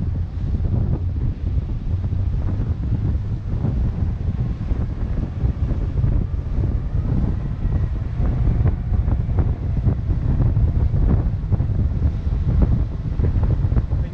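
Wind buffeting the microphone of a camera on a fast-moving boat, a heavy gusting rumble, with water rushing and splashing against the hull.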